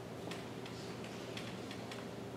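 Several faint light clicks at uneven spacing, about five in two seconds, over a steady low hum.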